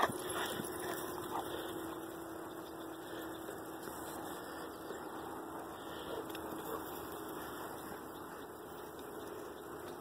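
Faint dog noises from Rottweilers at play, over a steady background hiss and a low steady hum that fades out about seven seconds in.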